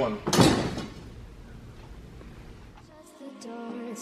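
A short, loud metallic clatter about half a second in as the old power steering cooler and its metal lines are handled, then low room noise; music starts about three seconds in.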